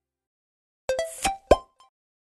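Weibo video end-card sound logo: a quick run of four short, pitched plops and blips starting about a second in, the loudest a sweeping blip, followed by a faint last blip.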